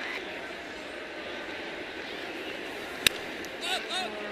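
Ballpark crowd murmur, then one sharp crack of a bat hitting a baseball about three seconds in, a ball that is popped up.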